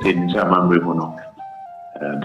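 A woman talking for about the first second, over a simple background melody of single held notes. The melody carries on alone, stepping between a few pitches, once she stops.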